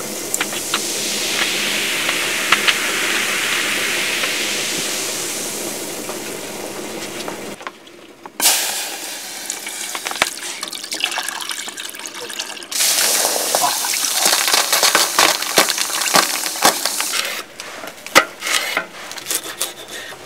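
A freshly poured carbonated lemon drink fizzing in a cup, the hiss swelling and then fading. After that, a milky liquid is poured into a metal pot, the pitch rising as it fills. Near the end come sharp knocks of a knife on a wooden cutting board.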